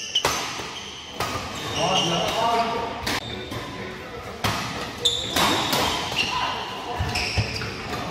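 Badminton rally in an echoing hall: rackets strike the shuttlecock sharply, roughly once a second, with players' voices between the hits.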